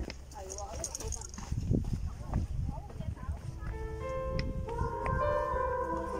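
Footsteps on stone trail steps, an irregular series of low knocks, with faint voices of nearby hikers. Background music with held tones comes back in a little past halfway.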